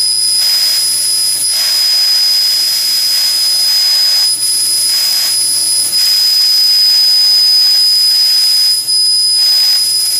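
Kern 400-watt CO2 laser cutting machine cutting 1/8-inch phenolic sheet: a loud, steady hiss of rushing air at the cutting head with a high-pitched steady whine above it. The hiss dips briefly a few times as the head works along the cut.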